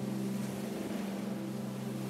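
A steady low drone of several held tones that do not change in pitch, the bed laid under the meditation narration.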